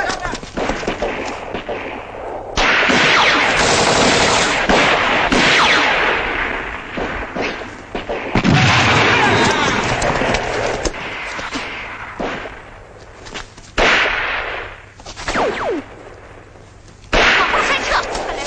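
Battle sound effects on a film soundtrack: bursts of rapid machine-gun and rifle fire, in loud sections that cut in and out abruptly, with falling whines about eight seconds in and again near the end.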